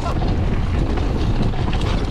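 Wind rushing over the camera microphone as a mountain bike rolls fast downhill on a dirt trail, with tyre rumble and small rattles over the ground.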